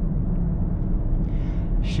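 Steady low in-cabin rumble of a 2019 VW Golf 7.5 with the 1.6 TDI four-cylinder diesel and DSG gearbox, driving along: tyre, road and engine noise heard from inside the car.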